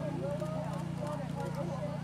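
Faint hoofbeats of a thoroughbred cantering on turf, under overlapping background voices and a steady low hum.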